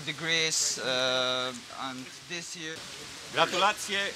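A man's voice speaking with long drawn-out vowels over a steady background hiss, with a short pause a little past the middle before he speaks again.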